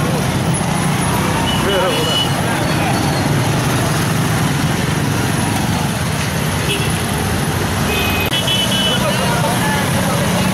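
Many motorcycle and scooter engines running together in a slow-moving motorcycle rally, with men's voices over them. Short horn beeps sound about two seconds in and again near the end.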